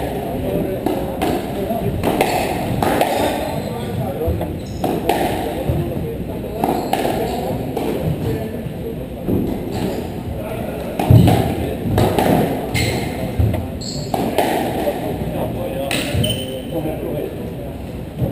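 Squash rally: the ball is struck by rackets and rebounds off the court walls, sharp pinging knocks about every one to two seconds, over a steady murmur of voices echoing in the hall.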